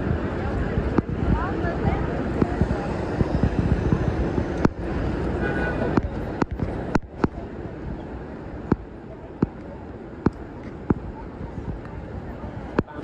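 Busy city street ambience: traffic rumble and the voices of passing pedestrians, loudest in the first half. From about halfway it quietens, and a run of short, sharp clicks comes through, under a second apart.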